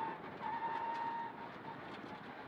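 Mitsubishi Lancer Evo X rally car heard from inside the cabin at speed: engine and road noise with a thin steady whine that fades out a little past halfway.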